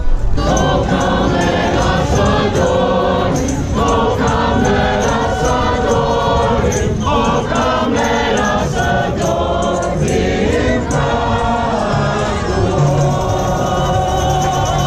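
Many voices singing together, choir-like, with music behind them.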